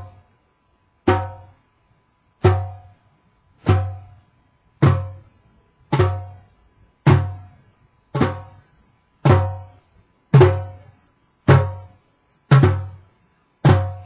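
Two djembe hand drums played in near-unison with one hand, a slow, even beat of single strokes about once a second, each a low boom with a short ring.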